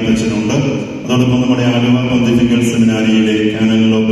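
A man's voice chanting a liturgical prayer into a microphone in long held notes, with a short break about a second in.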